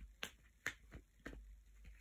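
Tarot cards being handled and laid down, giving about four or five light, sharp clicks.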